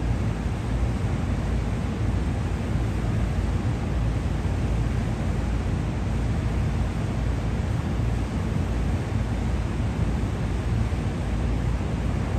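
Steady low rumble of city background noise, an even hum and hiss with no distinct events.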